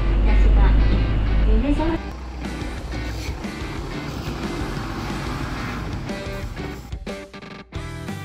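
A bus engine running as a loud low rumble inside the cabin for about the first two seconds, then quieter background music.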